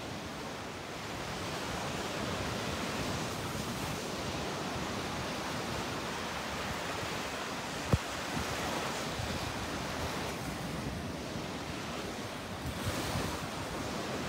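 Small sea waves washing up onto a sandy beach, a steady hiss of surf with gentle swells. A single sharp click about eight seconds in.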